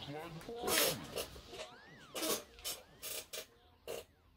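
A plastic water bottle handled and opened: a run of short crackling and rustling bursts as the bottle is gripped and its cap twisted off, before a drink is taken near the end.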